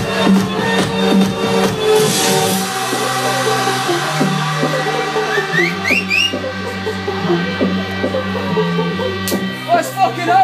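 Electronic dance music played by a DJ over a club sound system. The kick drum drops out about two seconds in, leaving a held bass line and a few short rising synth swoops, and the beat comes back near the end.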